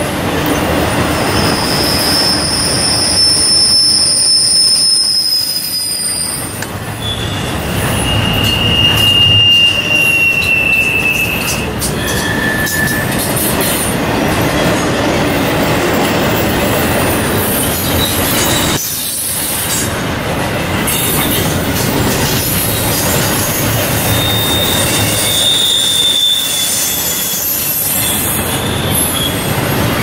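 Double-stack intermodal freight cars rolling past, with a steady rumble of wheels on rail and high-pitched wheel squeals that come and go several times, the longest in the first few seconds and again near the end.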